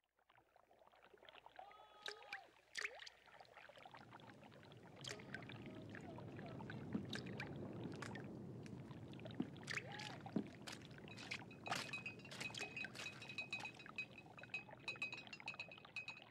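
Faint trickling, watery sound with scattered small clicks and drips. It grows a little louder a few seconds in, and faint steady high tones join in the second half.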